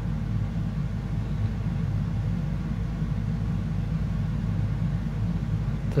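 Steady low background rumble, with no distinct events in it.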